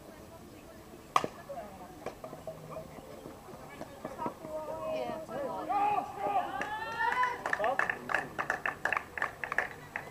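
A single sharp crack of a softball bat hitting the ball about a second in. Players' voices shouting follow, then a quick run of claps near the end.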